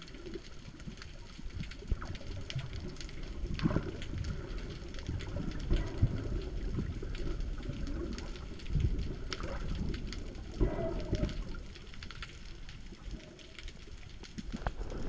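Water noise heard underwater through an action-camera housing: a muffled low rumble with irregular soft thumps and scattered clicks as the camera moves through the water.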